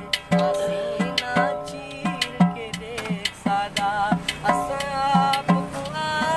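A man singing a Saraiki folk song in long wavering notes, keeping time with hand beats on a cylindrical container played as a drum, two to three strokes a second.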